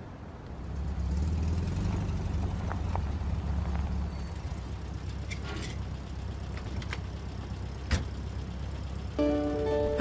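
Low engine rumble of a classic Volkswagen Beetle, swelling about a second in as the car pulls up and then running on more steadily. A single sharp click sounds near the end.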